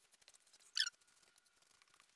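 A single brief, high squeak of a sponge rubbing cleaning paste across a stainless steel pot, a little under a second in; otherwise very quiet.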